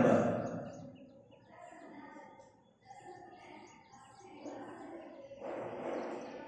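Chalk writing on a blackboard: faint scratching strokes as words are written, after a spoken word fades out in the first second.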